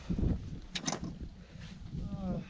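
Wind buffeting the microphone in low rumbles, with a couple of short sharp clicks a little under a second in.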